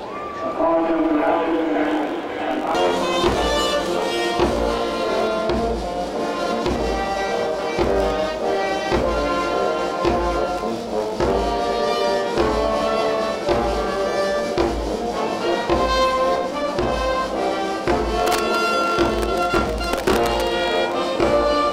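Brass band playing a tune over a steady, evenly spaced bass-drum beat; the music starts just after the opening.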